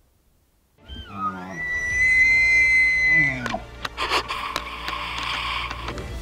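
Bull elk bugling: one call that rises into a high held whistle for about two seconds, then drops into lower grunting notes. Theme music comes in about four seconds in.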